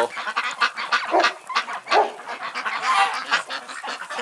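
A flock of ducks quacking in a quick run of short calls, with a few longer calls, and wings flapping near the start.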